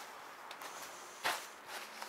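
A single footstep crunching on dry cut vegetation about a second in, over a faint steady outdoor hiss.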